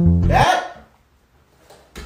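Plucked-guitar background music that stops about half a second in, as a brief rising drinking sound comes from a man sipping from a wine glass. Near silence follows.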